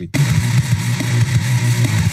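A loud, steady, low rumbling drone that starts abruptly just after the beginning, with a rough hiss above it, from the soundtrack of a music video being played.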